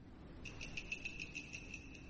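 Faint, high-pitched insect-like trill that starts about half a second in, pulsing rapidly at about eight beats a second, over low background hiss.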